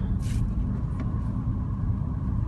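Car cabin noise while driving: a steady low rumble of engine and tyres on the road, heard from inside the car. A short hiss comes about a quarter second in.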